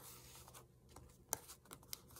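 Faint handling of paper as a small taped piece is set into a journal page, with a few light clicks in the second half.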